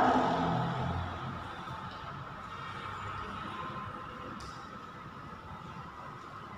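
Chalk scratching and tapping faintly on a blackboard as a line of words is written, over a steady background noise.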